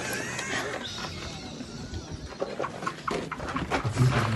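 A woman's high, wavering shriek of fright in the first second, followed by scattered knocks and rustling from the handling of the filming phone.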